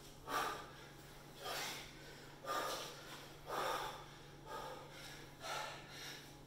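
A man breathing hard and forcefully while lifting a 57 lb sandbag in repeated thrusters: six loud puffs of breath, about one a second, one with each repetition.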